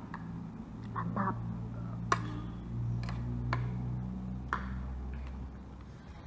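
A few sharp clinks of metal spoons against a plate and bowl, spread a second or so apart, over a steady low hum.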